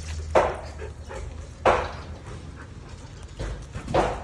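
A corgi and a Samoyed play-fighting, with two short, sharp dog sounds a little over a second apart and a third near the end.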